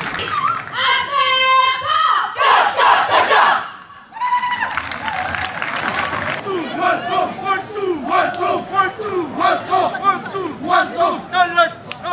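Many trainees shouting together in unison during a military martial-arts drill, a dense mass of loud voices. After a short break about four seconds in, there is a rapid run of short, sharp shouts.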